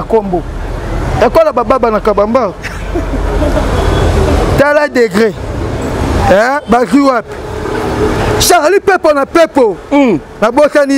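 A man's voice in short bursts of speech, with steady street traffic noise filling the pauses between them.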